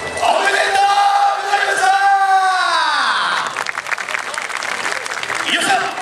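A man's loud shouted calls, one long drawn-out call falling in pitch about halfway through, followed by crowd shouting and cheering.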